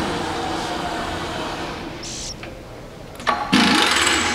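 Trak DPM mill's spindle running in the low range, its hum dying away over the first two or three seconds. Near the end there is a sharp click and a short burst of loud air-and-metal noise from the power drawbar working.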